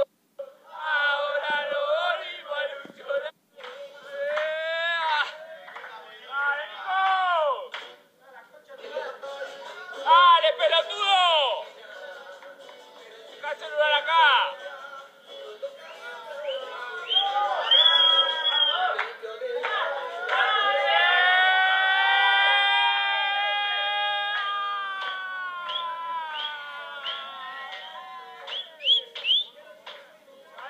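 Singing with music: a melody sung with many sliding notes, and one long held note about two-thirds of the way through that slowly sinks in pitch.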